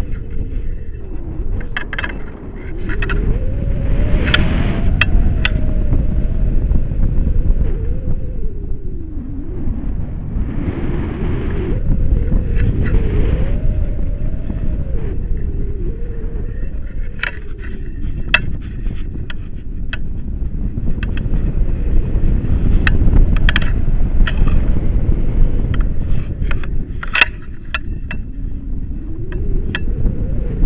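Wind buffeting a selfie-stick camera's microphone in paraglider flight: a loud, unsteady low rumble with scattered sharp clicks.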